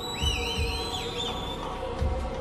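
The opening of a live metal song: a sustained keyboard chord with low thuds under it, and a warbling, wavering whistle over the top for about the first second and a half.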